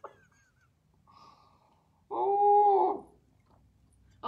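A woman's single drawn-out vocal sound held on one steady, fairly high pitch, lasting under a second, about two seconds in.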